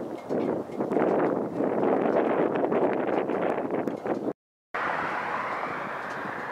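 Wind buffeting the microphone, a rushing noise that rises and falls in gusts. It cuts out to silence for about half a second just past four seconds in, then resumes as a steadier rush.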